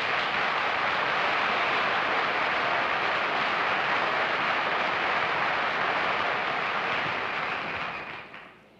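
Studio audience applauding steadily, the clapping fading away near the end.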